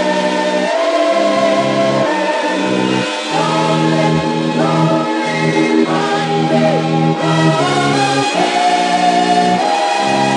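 Oldies pop record playing: a group of voices singing long held notes in harmony, with the band beneath them.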